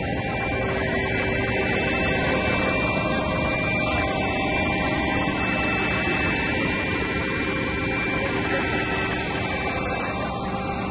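CAT asphalt paver's diesel engine running steadily close by while laying hot mix, an even mechanical noise with a few faint steady tones over it.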